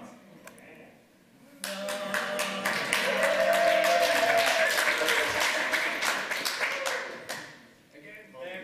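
Audience clapping and cheering, breaking out suddenly about a second and a half in and dying away near the end.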